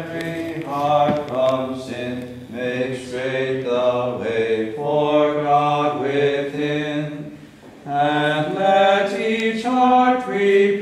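Voices singing a slow liturgical chant in held notes, with a short breath pause near the end before the singing resumes.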